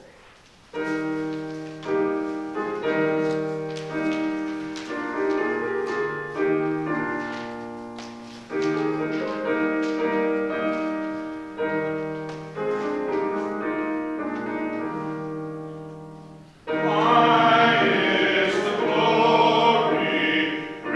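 Piano playing a hymn introduction, chords struck and fading one after another. Near the end the congregation joins in singing the hymn over the piano, noticeably louder.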